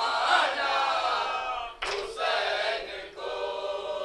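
Men's voices chanting a nauha, a Shia Muharram lament, together in unison with no instruments.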